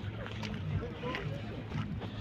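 Open-air car-market background: a low steady engine hum with faint distant voices.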